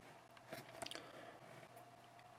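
Near silence: room tone with a faint steady hum and a few soft clicks about half a second in.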